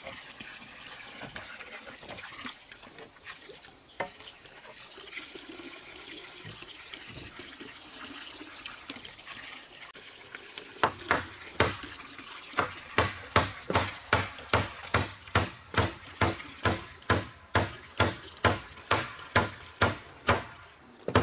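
Hammer driving nails into the wooden backrest rail of a plank bench: a steady run of sharp strikes, about two a second, beginning about halfway through. Before that, a few scattered wooden knocks as planks are handled.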